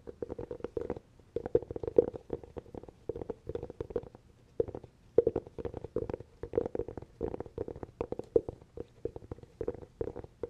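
Fingers tapping quickly on a hollow cork object, each tap a short hollow knock with a resonant ring. The taps come in irregular flurries, with short pauses about a second in and again around four seconds in.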